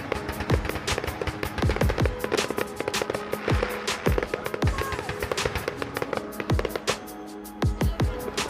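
Fireworks going off in rapid, irregular bangs and crackles, heard together with music of steady held tones. The bangs ease briefly shortly before the end, then a loud burst follows.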